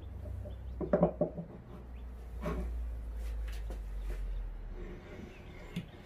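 Cast-iron saddle of a Harbor Freight mini mill sliding onto its freshly oiled dovetail ways: a low rumble of metal gliding on metal, smooth, with a few small clicks and knocks, the rumble stopping a little before the end.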